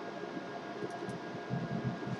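Faint, steady background hiss with a thin, constant high whine. This is room tone with no distinct sound event.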